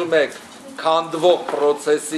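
A man talking, his voice ringing a little in a small room, with a brief pause in his speech just after the start.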